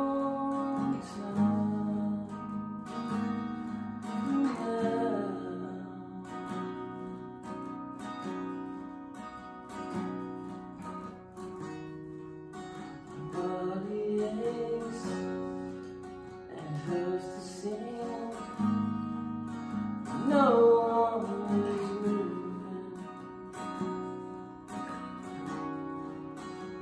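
Epiphone jumbo cutaway acoustic guitar played solo in an instrumental passage of a song, picked chords ringing and changing.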